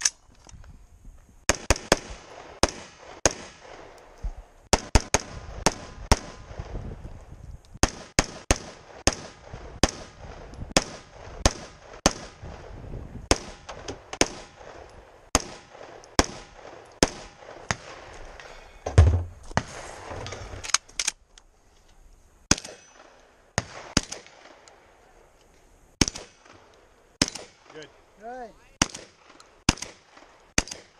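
Close gunshots from the shooter's own guns: strings of rifle shots, one to two a second, with a heavy low thump about 19 seconds in. After a short pause, slower shotgun shots come about a second apart.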